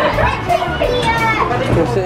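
Children's voices and people chattering, over a steady low hum.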